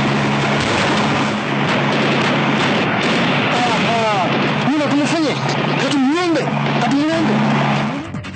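Loud, continuous roar of helicopter noise with a steady low hum under it. In the second half, voices yell in rising and falling cries over it.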